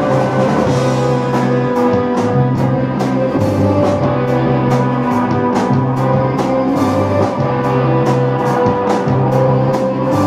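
Rock band playing live without vocals: electric guitars, electric bass, keyboard and drum kit, with a repeating bass figure and steady cymbal strokes.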